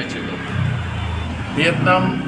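Low engine rumble of a motor vehicle, swelling about half a second in and fading after a second, under a man's speech.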